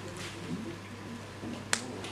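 A single sharp click near the end, over a steady low hum.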